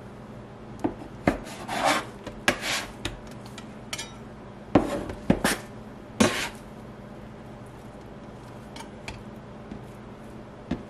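Bench scraper cutting through sticky bread dough and scraping and knocking against the countertop: a run of short scrapes and sharp clicks over the first six or seven seconds, with only faint ticks after that.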